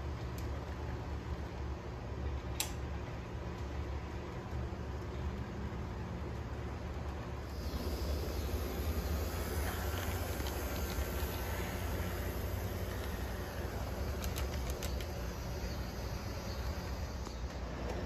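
HO scale model train running on the layout's track: a steady low hum with rolling noise that grows louder, with more hiss, about eight seconds in as a model diesel passes close, and eases later. A single sharp click comes near the start.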